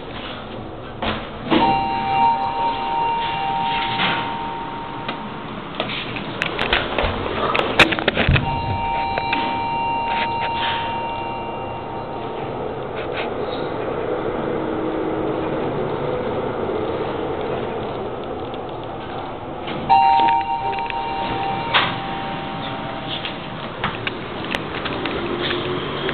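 Schindler machine-room-less passenger lift in use: an electronic two-tone chime sounds three times, the first two held for about three seconds and the last shorter. Between the chimes come the lift's sliding doors and scattered clicks and knocks over a steady running hum.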